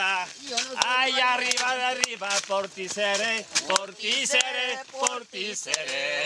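A man singing unaccompanied, with long held, wavering notes, and a few sharp knocks here and there.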